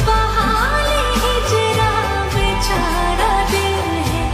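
Hindi film love song in a lofi reverb version: a solo voice sings a winding, ornamented melody over held bass notes and sustained backing chords.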